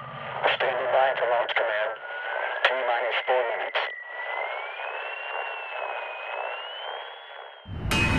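Radio transmission sound: garbled voice chatter and clicks through narrow-band static, with a thin tone that wavers slowly upward. Music comes in loudly just before the end.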